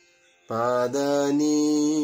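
A man's voice singing the melody's notes in long, held tones. It starts about half a second in and steps between pitches a couple of times.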